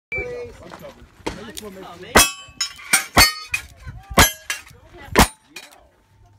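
A string of revolver shots at steel targets, roughly one a second, with the steel plates ringing after the hits.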